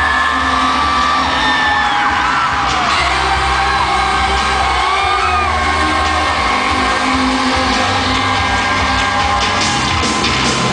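Live pop concert music over an arena PA, recorded from among the audience, with a steady bass line. Fans scream and whoop over it throughout.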